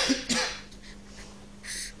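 A person coughing: two quick coughs in the first half-second, then a short, fainter rasp near the end.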